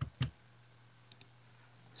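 Two sharp clicks from a computer being operated, about a fifth of a second apart, then two faint ticks about a second later, over a faint steady low hum.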